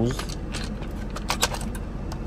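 A few sharp plastic clicks and rattles as a multimeter's battery cover and case are handled and worked loose, clustered about a second and a half in.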